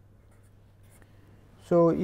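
Pen writing on paper: faint scratching strokes as letters and a closing bracket are written, followed near the end by a man's voice.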